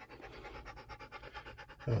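Pit bull panting rapidly with its mouth open, a fast, even rhythm of short breaths.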